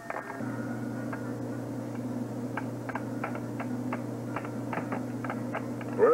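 A steady low hum with more than a dozen light clicks scattered through it, most of them after the first two seconds.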